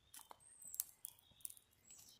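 Faint, scattered crackling from a pine cone firelighter burning in the hand. A short, high chirp comes about half a second in.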